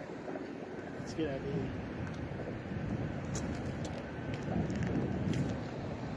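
Outdoor street background noise with faint, distant voices a little over a second in and again around the fifth second.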